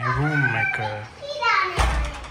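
A small child's excited voice calling out without clear words, ending in a high call that rises in pitch. A single thump sounds just before the end.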